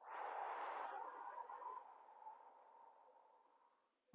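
A long, slow breath out close to a clip-on microphone, starting at once and fading away over about three seconds.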